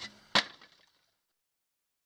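A faint click at the start, then a single sharp crack about a third of a second in.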